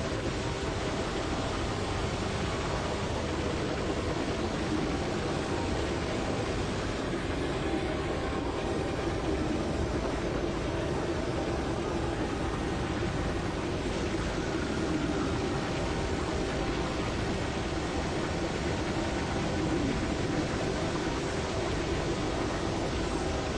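Steady, dense electronic noise drone from synthesizers: an unchanging rumbling wash with a faint held low tone inside it.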